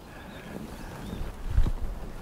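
Low rumbling noise on a handheld camera's microphone that swells briefly near the end, over faint outdoor background noise.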